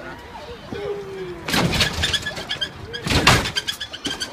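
Hydraulic lowrider hopping: the car's front end slams down on the pavement twice, heavy bangs about a second and a half apart, with crowd voices around it.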